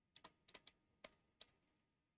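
Faint clicks of a stylus tapping on a tablet screen while writing, about seven irregular taps in the first second and a half.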